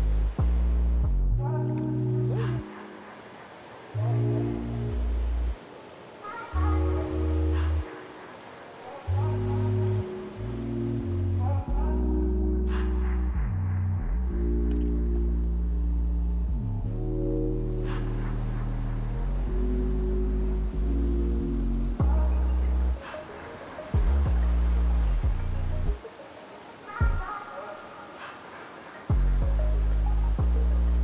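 Background music of held chords over deep bass notes, changing every second or two and dropping out briefly several times.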